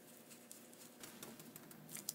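Very faint, light scratching and soft irregular taps of a dome stencil brush swirling paint over a plastic stencil on a wooden sign board, a little busier from about a second in.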